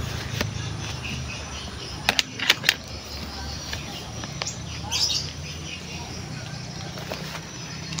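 Leaves and branches of garden shrubs rustling as someone pushes through them on foot, with a few sharp clicks about two to three seconds in, over a steady low hum.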